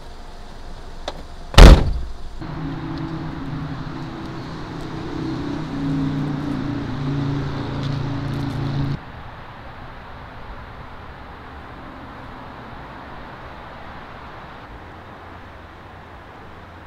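A car door slammed shut once, loudly, about a second and a half in. It is followed by a steady low hum that runs for several seconds and stops abruptly, then only faint background noise.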